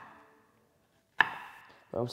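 Chef's knife chopping onion on a wooden cutting board: two sharp chops about a second apart, each with a brief ring.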